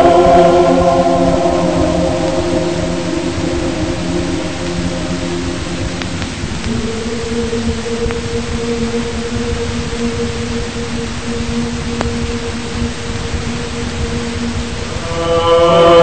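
Choral chanting in slow, long-held notes. It fades down over the first few seconds, holds two steady sustained notes through the middle, and swells back louder with a fuller chord about a second before the end.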